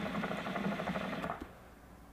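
Hookah water bubbling in the base as smoke is drawn through the hose: a fast, steady bubbling that stops about a second and a half in.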